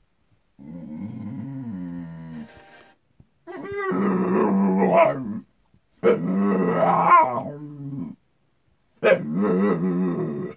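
A dog vocalizing in four drawn-out, pitched cries, each lasting one to two seconds with short silences between them.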